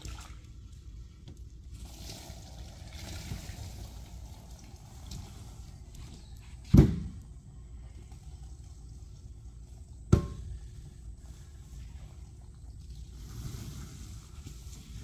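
Squeegee pushing soapy, urine-laden rinse water across a soaked area rug, the water trickling off through the drainage grate. Two sharp knocks, about seven and ten seconds in, stand out above it.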